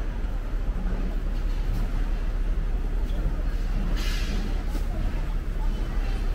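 Street ambience at a night market: a steady low rumble of city traffic with faint voices, and a short sharp rustle or clatter about four seconds in.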